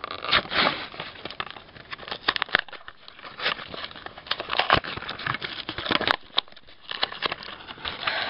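Pokémon trading-card booster pack being handled and torn open by hand: irregular crinkling and crackling of the wrapper with many sharp snaps.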